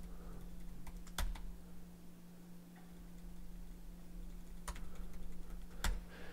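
A few scattered keystrokes on a computer keyboard while code is being edited. There are single clicks about a second in, and a couple more near the end.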